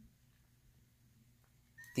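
Near silence, room tone only. Near the end a faint, brief high tone sounds as the LG G3 starts up, the beginning of its startup chime.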